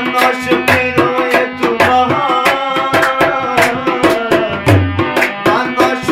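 Afghan folk song played live: a man singing over the sustained reedy chords of a harmonium, with tabla drumming a brisk steady rhythm and occasional deep bass-drum notes.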